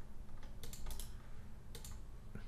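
Faint clicks of a computer mouse and keyboard as a block of text is selected and copied, in two short clusters: one a little before a second in and one near the end.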